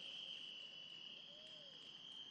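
Faint, steady high-pitched trill of crickets.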